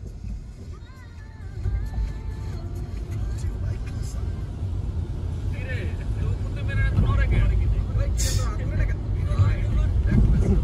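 Steady low rumble of a car driving along city streets, heard from inside the cabin, growing louder about seven seconds in; faint voices and music-like tones sit over it.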